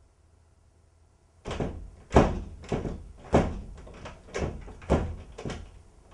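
A run of about eight heavy knocks or thuds on a door, starting about a second and a half in and coming a little under two a second.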